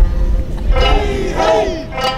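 Several voices shouting Eisa calls in a break between the sanshin phrases, the shouts sliding in pitch, loudest from about a second in. A low rumble sits under the start.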